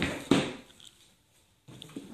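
A cardboard shoebox being handled and set down on a glass tabletop: two quick knocks right at the start, then quiet apart from faint handling noise near the end.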